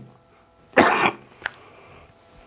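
A man coughs once, a short dry cough about three-quarters of a second in, followed by a faint click.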